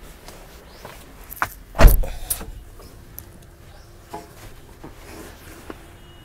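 Knocks and clicks from a safari vehicle's interior being handled, with one heavy thump from the vehicle body about two seconds in, and a few lighter clicks around it.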